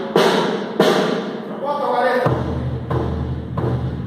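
Snare drum struck a few sharp times, two strokes in the first second and another about two seconds in, each a dry crack with a short buzzy ring and no definite note.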